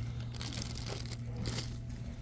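Faint, irregular rustling and crinkling over a steady low hum of store background noise.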